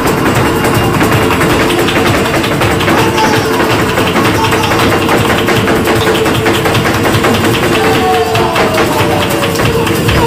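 Live flamenco: a dancer's rapid footwork (zapateado), heel and toe strikes on the stage, over flamenco guitar accompaniment.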